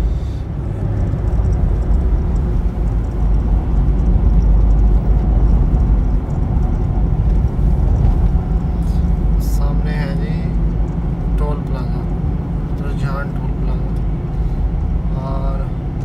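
Steady low rumble of road and engine noise heard inside a car's cabin while it drives along a highway.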